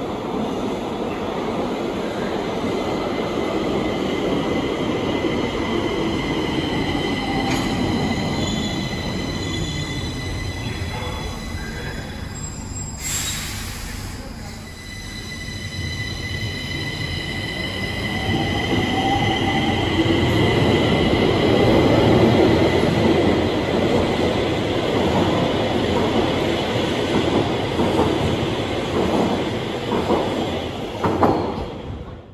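Stockholm metro train pulling into an underground station and braking to a stop, with steady high whining tones over the rumble of the cars. A short hiss of air about 13 seconds in, then the train pulls away again, its rumble and whine rising.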